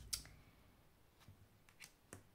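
Faint clicks of tarot cards being handled on a table: one sharp click just after the start, then a few soft ticks in the second half.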